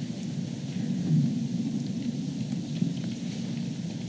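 Steady low room noise of a large meeting hall: a dull rumbling hiss with faint rustling, and no voices.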